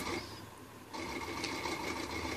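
Faint steady machine hum with a thin high whine. It fades briefly and comes back about a second in.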